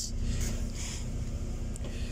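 Interior noise of an Alexander Dennis Enviro400 MMC double-decker bus heard from the upper deck: a steady low engine drone with a constant hum.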